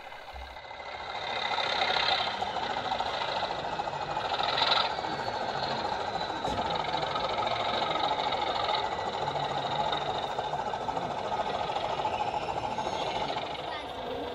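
Sound-fitted O gauge model of a Class 20 diesel locomotive playing its diesel engine sound through the model's speaker as it runs slowly. The sound rises about a second in and then holds steady, with a steady high whistle over it.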